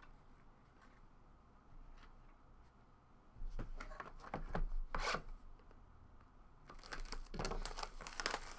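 Hands handling a shrink-wrapped cardboard box of trading cards: a few short scrapes and rubs as the box is slid off a stack about three and a half seconds in, then a dense crinkling rustle of its plastic wrap near the end.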